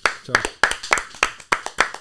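Two people clapping their hands, a quick run of uneven claps that are not in time with each other.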